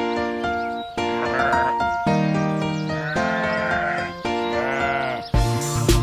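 Children's song backing music with cartoon sheep bleating over it, several wavering bleats. A beat with heavy low thumps comes in near the end.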